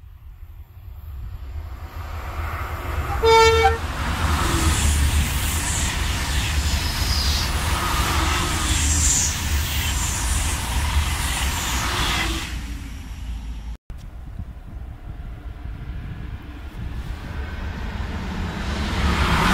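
A single-deck TGV high-speed train sounds its horn once, a short single tone, about three seconds in, then passes at speed, a loud rush of wheels and air lasting about eight seconds that dies away. After a brief dropout, the rising rush of a second high-speed train, a double-deck TGV Duplex, builds near the end.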